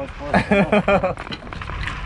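Indistinct talk among several people, with no clear words: a short burst of voice near the start, then quieter background chatter.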